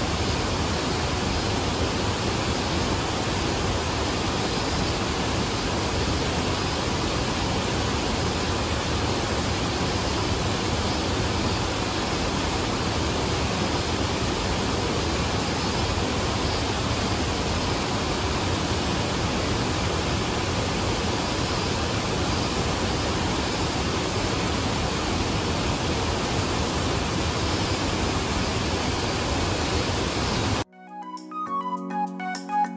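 Yoro Falls, a tall waterfall, pouring down: a loud, steady, unbroken rush of falling water.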